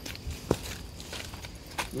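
Footsteps on a dirt trail strewn with dry leaves, with one sharp click about half a second in.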